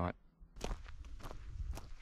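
Footsteps on dry dirt and leaf litter, steady, about two steps a second.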